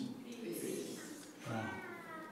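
Congregation member's voice answering "peace" about a second and a half in, quiet and drawn out, in reply to the preacher's call.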